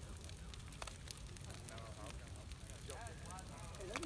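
Large outdoor bonfire burning with a steady low rumble and scattered sharp crackles and pops. Faint voices murmur in the background a few seconds in.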